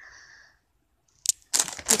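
Plastic crisp multipack bag crinkling loudly as it is handled and moved, starting suddenly just over a second in.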